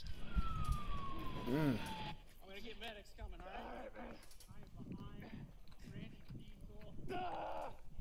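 Police body-camera audio: a single tone falls steadily in pitch over the first two seconds, like a siren winding down, followed by faint, muffled voices.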